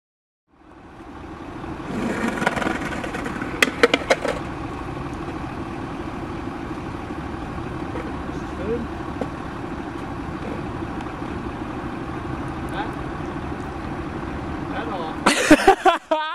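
Street noise with a large vehicle engine running steadily, fading in at the start. Indistinct voices are mixed in, with a few sharp clacks about four seconds in and a louder burst of knocks near the end.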